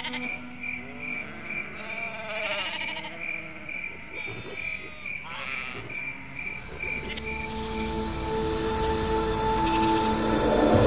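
Crickets chirping in a steady, evenly pulsed rhythm, with swirling sweeps underneath. About two-thirds of the way in, sustained music notes come in and swell as the chirping fades.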